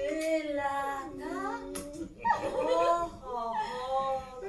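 A woman's high voice making drawn-out, sliding sing-song sounds with no clear words, rising and falling in pitch, with a short break about two seconds in.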